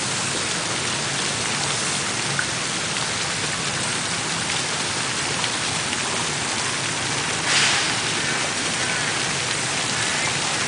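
Water from a park fountain's jets splashing down into its basin: a steady hiss of falling water, with a brief louder rush about seven and a half seconds in.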